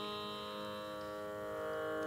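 Carnatic music: a steady tanpura drone with a held melodic note over it that shifts pitch about one and a half seconds in, before the singing begins.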